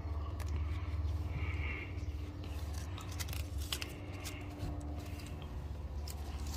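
Crackling and rustling of a backing film being peeled off the adhesive tape of a rubber front-lip strip as it is handled and pressed onto a car's front bumper. It comes as scattered small clicks and crinkles over a faint steady hum.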